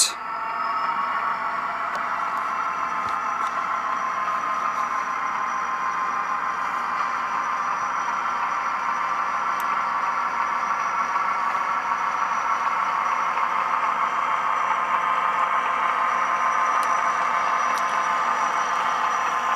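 Athearn Genesis HO-scale SD60E model locomotive running on the track, its factory Tsunami 2 sound decoder playing a steady diesel engine sound through the small onboard speaker, with a thin high whine over it. The sound grows slightly louder as it goes.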